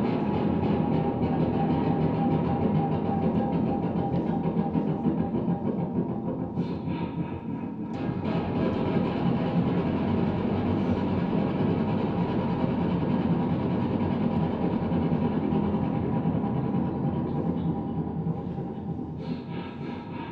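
Amplified violin made from decommissioned firearms, played as a continuous, rough, noisy drone with a steady high tone held above it; the sound thins briefly about seven seconds in, then swells again.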